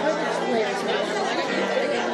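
Several people talking at once in a large room: steady background chatter of mingled voices.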